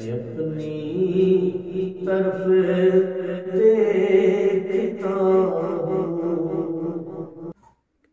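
A man's voice singing a hamd, an Urdu devotional poem in praise of God, without instruments, in long held melodic notes. The singing stops abruptly near the end as the recitation finishes.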